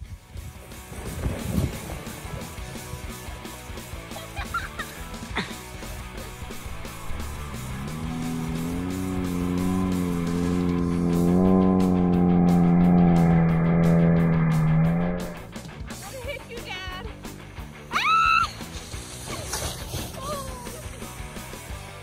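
A sled sliding down a snowy slope with a steady hiss of snow, overlaid by a long drawn-out vocal sound held for several seconds from about eight seconds in. Brief high-pitched shrieks come near the end.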